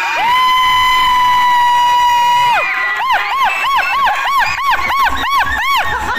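A shrill cheering cry held for about two and a half seconds, then a quick run of rising-and-falling whoops, about three a second.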